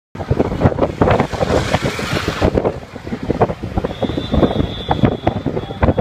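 Wind buffeting the microphone over the rumble of a moving vehicle, in loud, irregular gusts.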